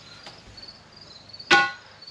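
Faint cricket chirping in the background, then about one and a half seconds in, a single sharp metallic clink that rings briefly and dies away.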